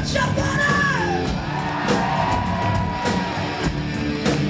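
Live hard rock band playing with drums, cymbal crashes, electric guitars and bass. Over it, the singer holds a high wailing note that slides down about a second in and is then sustained for about two seconds.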